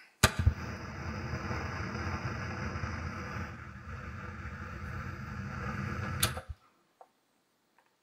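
An old-TV or videotape static sound effect: a sharp click, then about six seconds of steady hiss with a low hum, then another click, and it cuts off abruptly.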